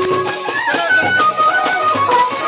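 Live Santhali folk dance music: barrel drums beat a steady rhythm under a high melody that steps and glides in pitch.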